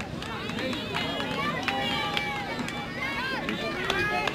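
Background crowd at a ballfield: many overlapping voices of spectators and players chattering and calling out at a distance, with a few faint clicks.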